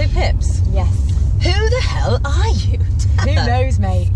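Steady low road rumble inside the cabin of a moving BMW i8, with women's voices talking and laughing over it.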